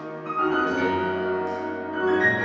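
Grand piano being played: a classical passage with chords ringing on and new notes struck about half a second in and again near the end.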